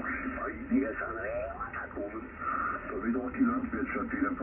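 Amateur radio voice on lower sideband in the 40-metre band, received on an Icom IC-756 transceiver and heard from its speaker: a narrow, thin-sounding voice with nothing above about 3 kHz, over a light hiss, while the tuning knob is nudged.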